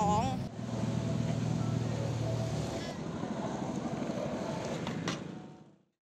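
After a brief last word of speech, a steady low outdoor rumble of wheels on pavement, with one sharp knock about five seconds in, fading out just before the end.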